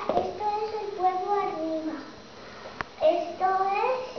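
A young girl singing, in held notes that slide up and down, with one sharp click just before three seconds in.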